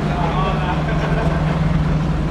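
Diesel engine of a British Rail Class 121 railcar running, heard inside the passenger saloon as a steady low drone with rumble beneath.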